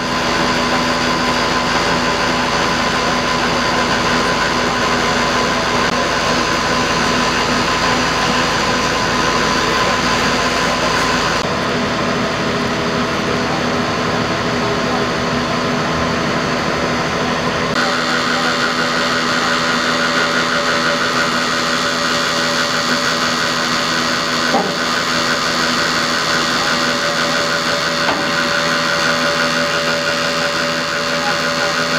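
A vehicle engine idling steadily, most likely the flatbed tow truck's, with voices in the background. The sound changes abruptly twice, once before the middle and again past it.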